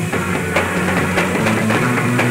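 Live rock band playing an instrumental passage: electric guitar and bass guitar over a drum kit, with steady drum hits.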